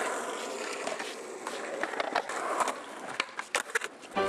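Skateboard wheels rolling on concrete, a steady rough rumble, with several sharp clacks of the board close together near the end.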